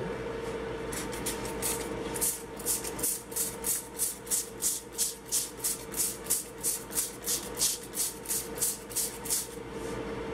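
Trigger spray bottle squirting apple juice onto aluminium foil in quick, even squirts, a few at first and then about three a second from about two seconds in until near the end. A steady hum runs underneath.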